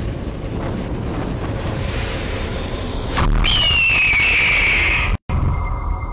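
Cinematic logo-reveal soundtrack for a team intro: a dense rumbling sound bed, then a boom about three seconds in followed by a high falling screech. The sound cuts out briefly just after five seconds, then the rumble resumes.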